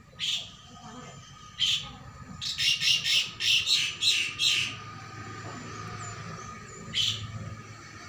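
Harsh bird calls: two single calls, then a quick run of about eight about halfway through, and one more near the end.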